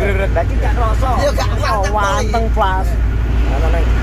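People's voices talking over the steady low rumble of a moving vehicle, heard from inside the cabin.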